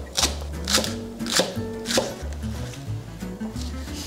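Global Sai chef's knife slicing through a green onion and striking a wooden cutting board: sharp cuts about half a second apart, strongest in the first two seconds, over soft background music.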